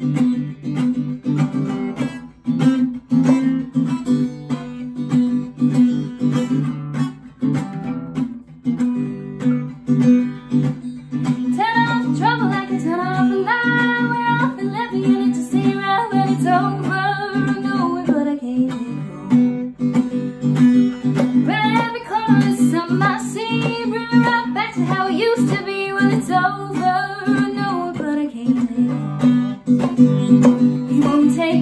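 Solo guitar and voice: a guitar strummed steadily. From about eleven seconds in, a woman sings a wordless melody over it, breaks off briefly around nineteen seconds, then sings it again.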